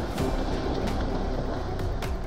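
Two hippopotamuses running through shallow river water, a heavy continuous splashing and churning of water.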